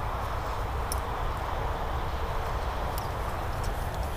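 Steady wind buffeting the microphone, a deep rumble, over the even hum of traffic on a nearby highway.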